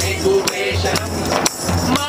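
Live group singing of a protest song, accompanied by strokes on a large two-headed drum and tambourine jingles.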